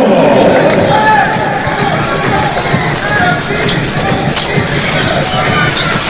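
Basketball arena crowd noise, steady and fairly loud, with music playing through it.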